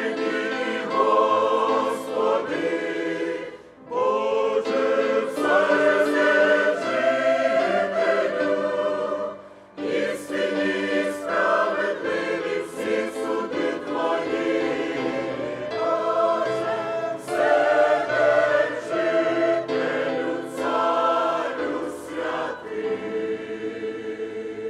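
Mixed church choir of women's and men's voices singing a hymn in Ukrainian, in phrases with short breaths between them, closing on a long held chord that fades away.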